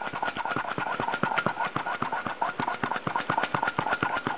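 Hand-operated brake bleeder vacuum pump being squeezed over and over, a fast run of clicks with a thin steady tone, drawing a vacuum on a supercharger bypass valve's actuator that holds it, a sign that the valve is good.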